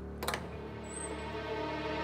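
Soft background score of sustained, held notes, with a single short click about a quarter second in.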